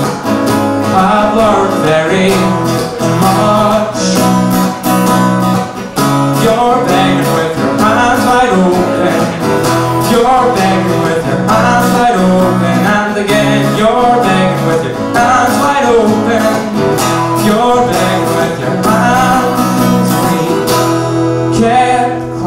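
An acoustic guitar strummed in a steady rhythm under a male voice singing, performed live.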